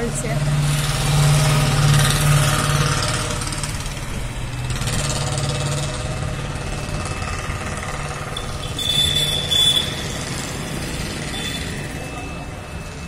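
Street traffic with a motor vehicle's engine passing close by, loudest in the first few seconds and then settling into a steady traffic hum.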